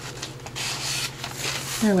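Paper towel rubbing over a journal's paper page in short wiping strokes, mopping up wet glue seeping from a glued edge.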